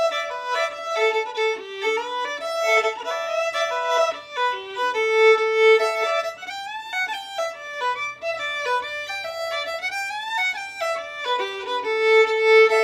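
Solo fiddle playing a Sliabh Luachra slide, a brisk Irish dance tune in 12/8 time, as an unbroken melody of quick bowed notes.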